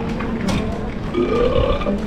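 Street litter bin playing a recorded burp about a second in, its response to rubbish being thrown in. A short click comes just before it.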